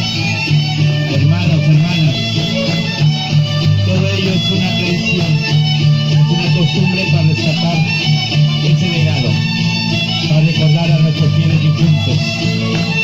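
Loud folk string music for the masked dancers: guitars with a violin playing a continuous dance tune.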